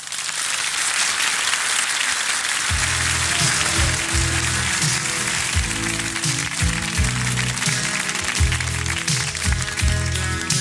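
Studio audience applauding, with the next song's intro, a bass line and a beat, coming in underneath about three seconds in.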